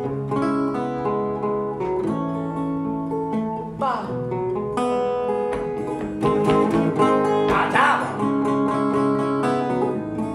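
Acoustic guitar strummed and picked in an instrumental break of a live song, with a foot stomping on a wooden stomp board for the beat.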